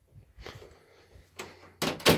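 A bedroom door being opened: faint, short handling sounds and a brief click about one and a half seconds in.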